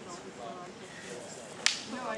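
A single sharp crack of a rattan fighting stick landing a strike during sparring, about three-quarters of the way through, over faint voices.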